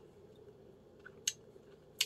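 Quiet room with a single short lip smack about a second in, a taster's mouth sound after a sip of beer.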